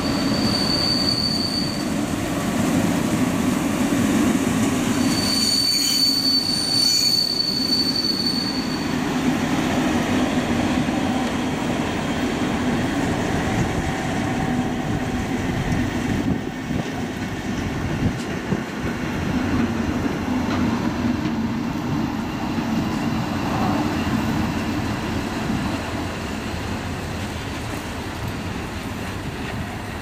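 Train rolling slowly past behind DB class 212 and 216 diesel-hydraulic locomotives, their engines running with a steady low drone. Wheels squeal briefly about a second in and again for about four seconds from five seconds in, with some clicking of wheels over rail joints.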